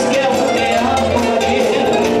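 A live band playing Latin American folk music on guitars and violin, continuous and steady.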